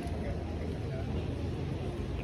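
Outdoor street ambience: a steady low rumble with faint voices of people nearby.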